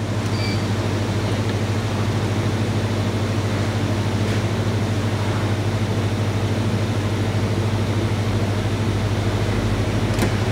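Soft-serve ice cream machine running with a steady low hum while soft serve is drawn from its dispenser into a cone. The hum swells as the dispensing starts, then holds even.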